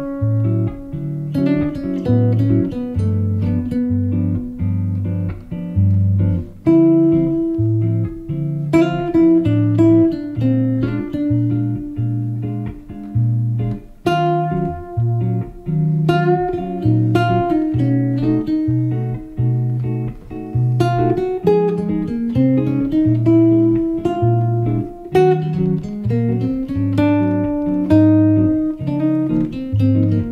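Guitar played fingerstyle in a bossa nova accompaniment pattern: a low bass note keeps pulsing under plucked chords, with an upper line moving through the chord changes.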